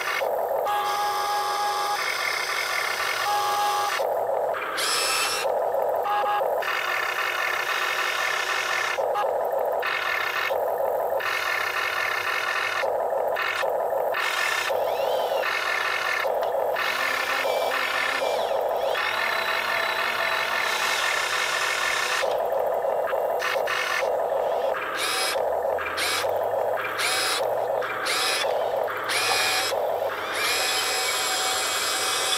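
Small electric motors and gearboxes of a radio-controlled excavator whining in short bursts. The sound stops and starts again every second or two as the boom, bucket and turntable are worked.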